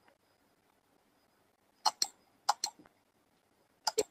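Computer mouse clicking: three quick pairs of sharp clicks, about two seconds in, about two and a half seconds in, and near the end.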